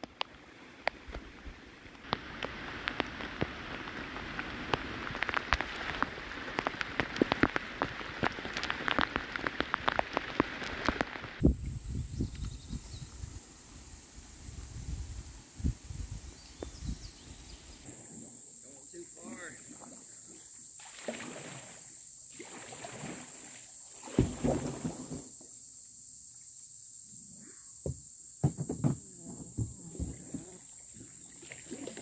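Rain falling on a river's surface, a dense patter of many small drops, for about the first eleven seconds. After that the sound changes to a low rumble, then to a steady high whine with a few distant voices.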